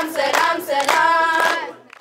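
A group of girls singing together, with hand claps about every half second; the singing fades out near the end.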